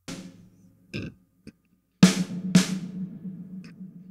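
Snare drum cracks played through Valhalla VintageVerb's Concert Hall reverb, with the reverb's high cut turned all the way down to 100 Hz. Two sharp hits come about two seconds in, half a second apart, each followed by a decaying tail with a low ring.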